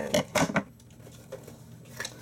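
Packaging tape being picked and peeled off a cardboard toy box: a few sharp crackling rips in the first half second, then faint scratches and small taps.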